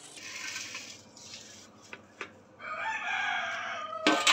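A rooster crowing, one long call in the second half, after a brief rustle near the start as hands work the potting soil.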